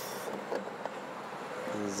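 Plastic fuel filler cap being unscrewed from the tank neck: a few faint clicks and scrapes over steady background noise, with a high hiss fading out in the first moments.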